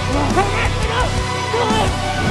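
Background music, with a voice over it giving a string of short, whiny yelps that rise and fall in pitch.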